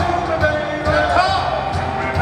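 Live blues-rock band playing: a steady low drum beat under electric guitar, with a man singing into a microphone.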